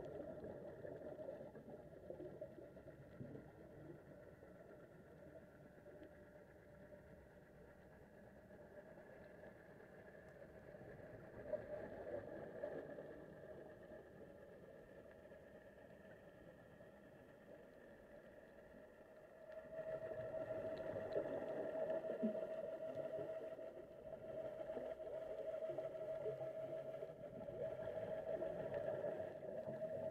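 Faint underwater sound picked up by a diving camera: a steady hum with swells of noise. The hum and noise grow louder about two-thirds of the way in.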